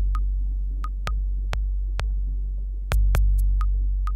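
Modular synthesizer music: a deep, steady bass drone under sharp, irregular clicks, many of them with a short higher ping. The bass swells louder about three seconds in.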